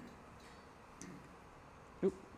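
Near silence: room tone in a presentation hall, with a couple of faint ticks, the clearest about a second in.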